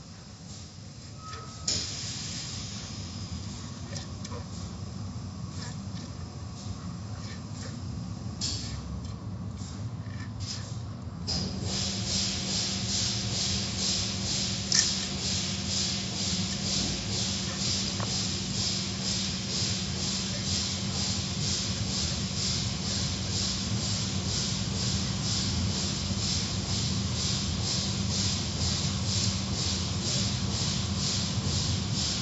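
Automatic tunnel car wash: water spray hissing and cloth wash curtains sweeping over a car, with a steady machine hum. About 11 seconds in it grows louder, with a rhythmic swishing as the car goes under the spray and cloth strips, and a sharp knock comes a few seconds later.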